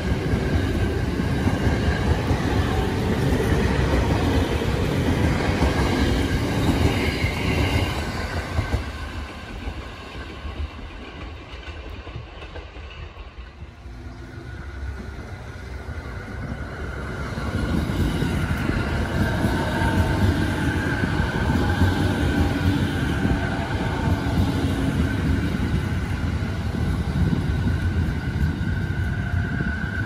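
JR 209 series electric commuter train running alongside at close range, wheels clicking over the rail joints. The noise dies away about a third of the way in, then builds again as a 209 series approaches and comes past, with a steady high whine through the last part.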